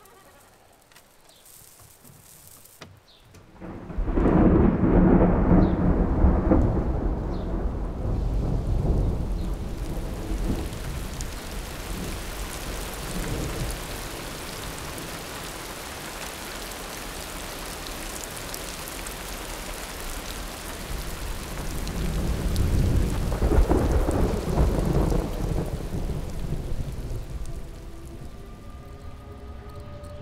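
Thunderstorm: a loud thunder rumble breaks out about four seconds in and rolls slowly away over the steady hiss of rain, and a second rumble swells and fades in the latter half.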